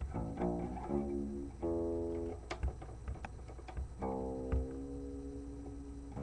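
Guitar being played: a run of plucked notes and chords, ending with a chord left ringing for about the last two seconds, with a few sharp string or finger clicks along the way.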